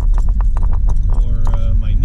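Car cabin noise while driving: a steady low road-and-engine rumble with rapid, irregular clicks and rattles through it.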